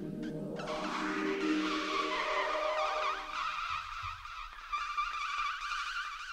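Experimental electroacoustic music from trumpet, accordion and live electronics. Low sustained tones fade out about halfway through, under a wavering, fluttering higher electronic layer.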